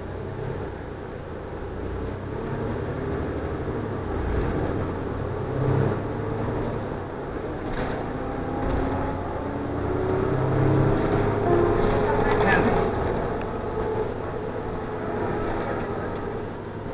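City bus heard from inside while under way: engine and road noise, getting louder about ten seconds in, with indistinct voices.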